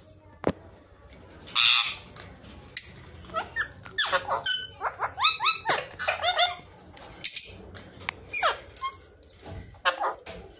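Caged Alexandrine and ringneck parakeets calling. A harsh screech comes about one and a half seconds in, followed by quick strings of short calls that each drop in pitch.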